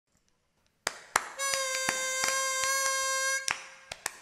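A pitch pipe blowing one steady reedy note, about two seconds long. Sharp clicks and taps come before it, during it and after it.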